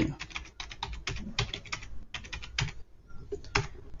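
Computer keyboard being typed, a quick irregular run of keystrokes, then a short pause about three seconds in and one last key press.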